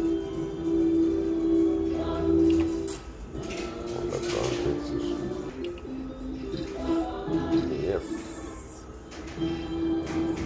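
Electronic game sounds from a Novoline Book of Ra Fixed slot machine. A loud held tone plays for about the first three seconds as the free spins end. Shorter jingle tones follow as the reels spin and stop, landing three scatter symbols for an extra game near the end.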